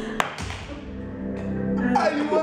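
Electronic dance music playing, with a single sharp click about a quarter of a second in.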